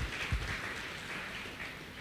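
Faint applause from a church congregation clapping, fading away.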